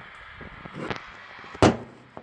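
One sharp knock, a little over a second and a half in, that dies away quickly, over a faint rustle.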